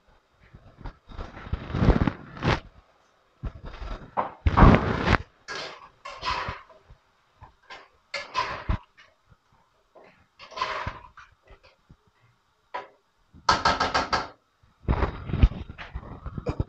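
A spoon stirring a thick chickpea and tomato stew in a pot, in separate bursts of scraping and wet stirring every second or two, with a quick rattle of knocks against the pot near the end.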